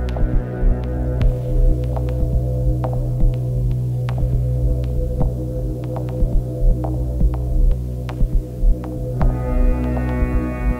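Electronic ambient drone from a performance score: a steady low hum made of stacked tones, broken by irregular sharp clicks about two a second. Near the end, higher tones join in.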